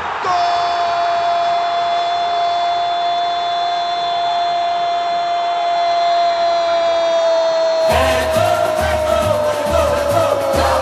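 A radio football commentator's long held goal cry, one sustained shout that sags slowly in pitch for about nine seconds. About eight seconds in, a radio jingle with a steady drum beat starts under it.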